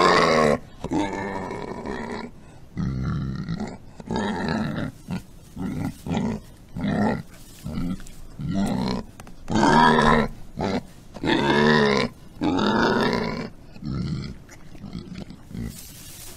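Domestic pig grunting over and over while lying in its straw nest. The grunts come about a second apart, some short and some drawn out.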